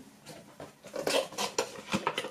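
Light clattering and rustling of the box's packaged items being handled, a quick run of small clicks and knocks starting about a second in after a quiet first second.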